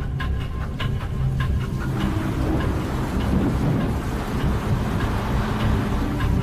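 Film score underscore: a low rumbling drone under a ticking pulse with held tones. About two seconds in, the pulse gives way to a swelling rush of noise, and it returns near the end.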